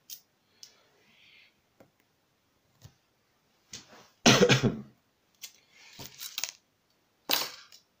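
Scattered light metal clicks and taps as a brass lock cylinder is handled and taken apart, with a louder thump a little past halfway and a cough near the end.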